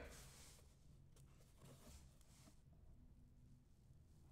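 Near silence, with a few faint clicks of a card box being handled and its lid opened.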